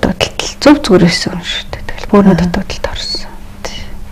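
Speech only: a person talking softly in short phrases.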